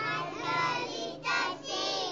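A group of young children reading a sentence aloud together in unison, in two short phrases.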